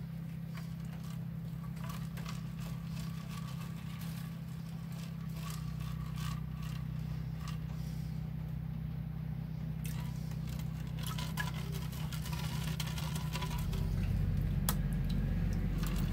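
Water sloshing and trickling as a plastic gold pan is swirled and dipped in a tub of water to wash off the light material. Under it runs a steady low hum, which gets a little louder near the end.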